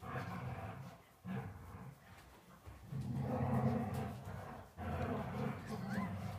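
Small dog growling in low, drawn-out grumbles, several stretches one after another with the longest near the middle.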